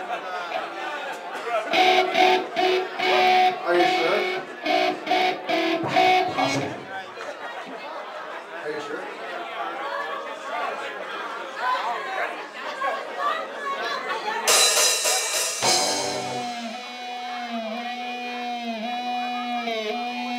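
Electric guitar played between songs over room chatter: a note picked repeatedly for several seconds, a loud crash about 14 seconds in, then a held guitar note that dips slightly in pitch over and over.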